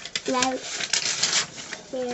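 Sheets of paper being handled, leafed through and rustled on a wooden table: a run of short crinkles and taps. A brief hummed voice sound comes about half a second in.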